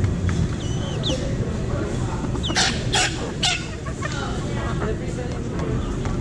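Feral chickens clucking, with three short, loud calls in quick succession about halfway through.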